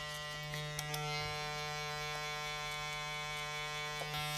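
Electric hair clippers with a number one guard, blade lever open, running with a steady hum while being worked up the side of the head.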